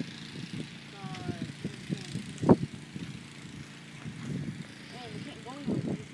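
Faint, indistinct voices over low, uneven outdoor rumble, with one sharp click about two and a half seconds in.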